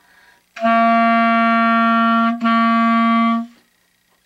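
Clarinet holding one long, steady warm-up note on written C, with a short break in the middle where the note is re-tongued. It lasts about three seconds.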